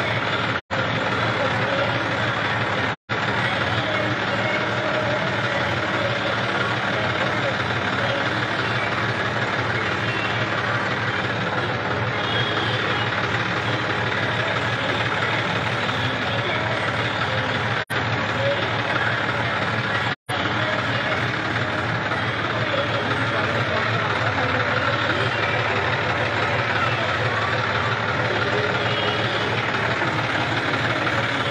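Tractor engine idling steadily close by, with people's voices around it. The sound cuts out briefly four times.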